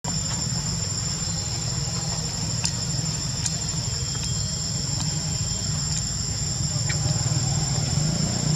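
Steady high-pitched insect chirring, crickets or cicadas, over a steady low rumble, with a few faint clicks.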